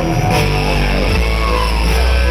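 Loud live electronic dance music over a club sound system: a heavy, steady bass line with an electric violin bowed over it, its pitch sliding in a short curve about a second and a half in.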